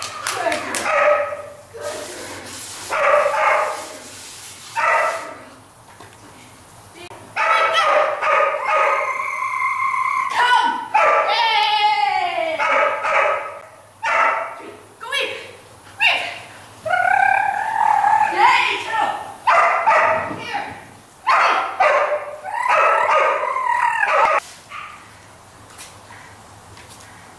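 A poodle barking and yipping over and over in high-pitched bursts, with a lull of a few seconds early on, then nearly continuous barking and a falling whine around the middle.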